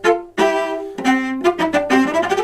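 Cello played with the bow: a phrase of separate notes at changing pitches, a longer note in the first second, then a quicker run of short notes.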